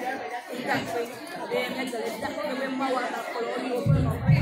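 Speech: a woman talking into a hand-held microphone, with other voices chattering behind her.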